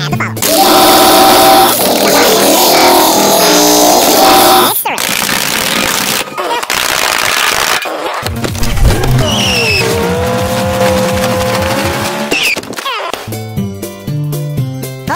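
Loud chaotic sounds played at double speed: music at first, then what sounds like a car engine running, with a short high tire squeal about halfway through.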